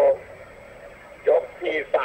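Broadcast commentary: a Thai-speaking commentator talks, with a pause of about a second in the middle.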